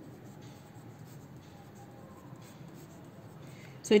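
Pencil writing on paper: faint short scratching strokes as numbers are jotted down in a column.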